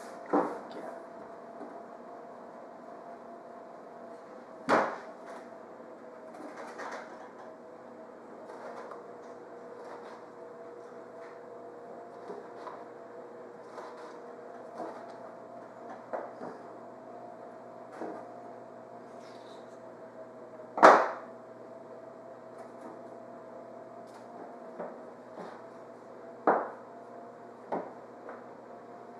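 Scattered light knocks and taps of a cookie cutter being pressed through rolled shortbread dough onto a stainless steel counter, the loudest knock about three-quarters of the way in and two more near the end, over a steady background hum.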